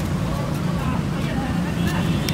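Steady low rumble of street traffic with the chatter of people nearby. A few light clicks near the end, a plastic spoon knocking against shaved ice in a glass bowl.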